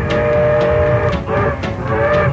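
Rockabilly band music, instrumental intro: a long held chord over a steady beat, giving way to sliding, bending notes a little over a second in.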